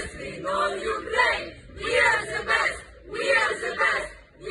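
Group of young men and women chanting together in unison, in short rhythmic phrases with brief pauses between them.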